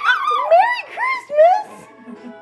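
Shih-poo puppy giving a quick series of high whines that rise and fall, about four in two seconds.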